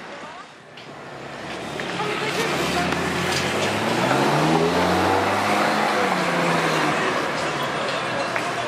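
Ferrari 458's naturally aspirated V8 accelerating at low speed as it drives past, its note rising for a couple of seconds, then holding steady as it moves off. It is loudest about halfway through.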